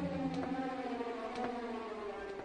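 A horror film's orchestral score playing: a few held, overlapping notes that slowly fade, with faint ticks.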